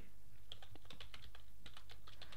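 Typing on a computer keyboard: a run of quick, irregular key clicks starting about half a second in.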